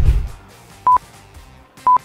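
A short low thump as the music cuts off, then two short, high electronic beeps one second apart: a countdown timer sound effect.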